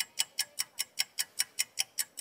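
Clock ticking sound effect: fast, even ticks at about five a second with no street noise behind them, filling a pause while an answer is awaited.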